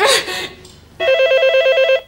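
Electronic desk telephone ringing with a rapid warbling trill, starting about halfway through and lasting about a second, cut off abruptly as the call is answered.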